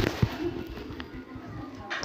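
Metal ladle stirring drumstick leaves in a steel kadai: a sharp metal knock at the start and a softer one just after, then quieter scraping and rustling of the leaves.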